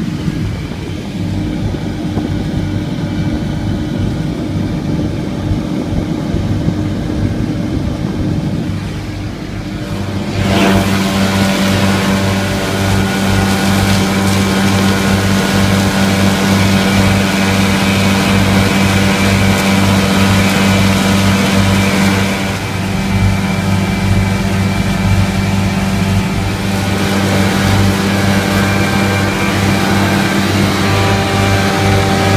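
Tractor engine running under load while a Kuhn disc mower cuts grass, heard from the cab as a steady mechanical hum. About a third of the way in it gets louder and brighter, with a brief dip about two-thirds of the way through.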